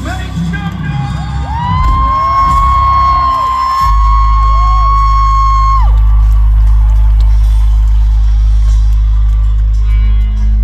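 Live arena concert sound: amplified music with the crowd screaming and whooping over it in the first half. From about four seconds in, a loud, steady deep bass drone takes over.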